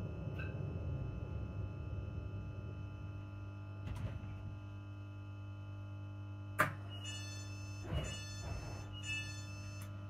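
Inside a ScotRail Class 334 electric train slowing to a stop: a steady low electrical hum with running rumble that eases off over the first few seconds. Near the end come a few sharp clunks and short high beeps about once a second.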